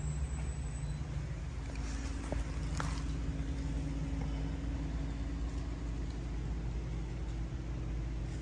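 A steady low mechanical hum with no speech, and a couple of faint ticks a few seconds in.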